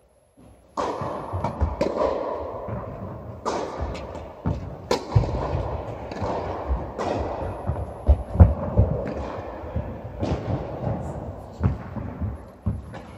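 Tennis rally in an indoor hall: sharp racket strikes and ball bounces roughly every second and a half, with smaller footstep squeaks and thuds between, ringing in the hall over steady room noise. The sound cuts in abruptly about a second in, after a near-silent gap.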